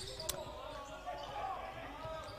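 A basketball bouncing on a hardwood court floor, one sharp bounce about a third of a second in, over the faint sounds of the hall.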